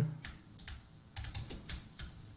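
Computer keyboard keys tapped in a quick run of about six light keystrokes, typing a word into a search box.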